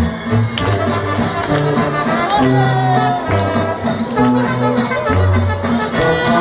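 A live brass band playing, trumpets and trombone over a low bass line that steps from note to note.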